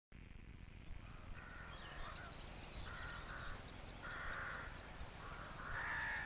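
Birds calling: a lower call repeats about four times, roughly every second and a half, while small birds chirp quickly and high above it.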